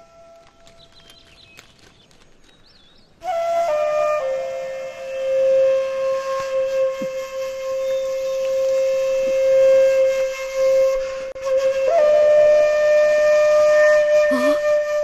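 Background music: a flute playing a slow melody of long held notes, coming in about three seconds in after a quiet start.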